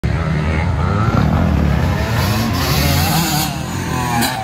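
Dirt bike engine revving and easing off as it rides the jump line, its pitch rising and falling again and again.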